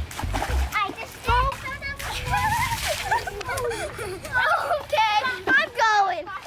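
Children's excited voices calling and chattering, with a splash of water between about two and three seconds in.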